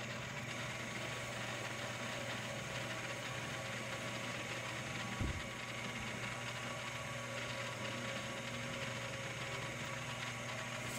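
Lathe-mill combo (1998 Shoptask XMTC Gold) running, its motor and gear drive making a steady mechanical whir with a steady hum, while a parting tool takes very light turning cuts on a small crosshead casting. A single short knock about five seconds in.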